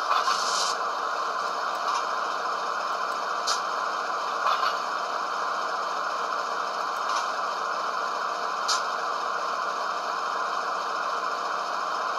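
Sound decoder of an HO-scale model GE ES44DC diesel locomotive playing the steady hum of the prime mover at idle through its small speaker. A few short, sharp high sounds cut in at the start and a few more times later on, in keeping with the decoder's coupler sound effect.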